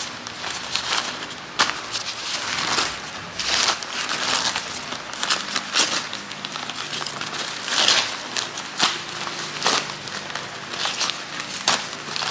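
Newspaper wrapping crinkling, rustling and tearing as hands pull it off a packed plant, in a long string of irregular crackles.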